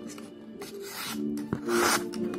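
A claw-shaped karambit knife slicing through a hand-held sheet of paper: two quick rasping cuts, the second near the end the louder, with a sharp click just before it.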